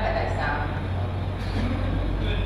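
A woman speaking into a microphone over a hall's PA system, with a steady low electrical hum underneath.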